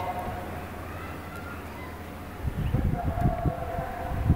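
Outdoor wind buffeting the microphone in irregular low rumbling gusts that set in about halfway through, over faint distant voices.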